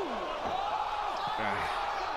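A man's voice making drawn-out exclamations that rise and fall in pitch, over a steady background hiss.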